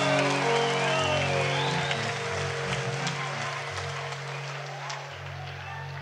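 A rock band's last chord ringing out on held guitar and bass notes and fading, while the concert audience cheers and applauds at the end of the song.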